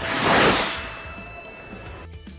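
A single whoosh that swells and fades over about a second, followed by a faint held tone.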